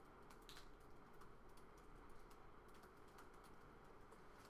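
Faint typing on a laptop keyboard: soft, irregular key clicks over a low steady room hum.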